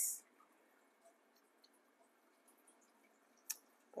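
Near silence: faint room tone, with one short, sharp click about three and a half seconds in.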